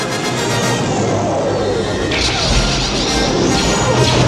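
Space-battle film soundtrack: orchestral score mixed with laser cannon fire, with a sudden blast about two seconds in.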